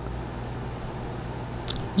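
Steady low background hum with a faint hiss, and one faint click near the end.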